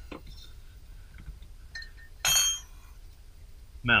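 A few faint clicks from a ratchet and socket, then a single ringing metallic clink a little past halfway as the steel tools knock together.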